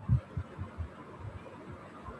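Colour pencil being stroked back and forth on paper over a cutting mat: a run of soft, quick low thuds, several a second and fewer after about a second, with faint scratching.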